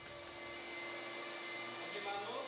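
Steady hiss with a faint low hum from factory production machinery, rising slightly in level over the first second and then holding.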